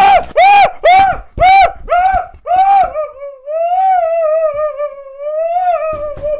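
A man laughing hard in a high falsetto, loud and close to the microphone: a quick run of about seven rising-and-falling 'ha' sounds, then one long, wavering, high-pitched squeal of laughter over the last few seconds.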